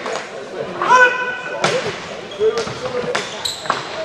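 Indoor hockey play in a sports hall: several sharp clacks of sticks and ball on a hard floor and boards, with players' voices calling out.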